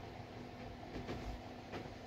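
Faint handling of clothing: fabric rustling and two light taps as a hand smooths a sports jacket and straightens its paper tag, over a steady low hum.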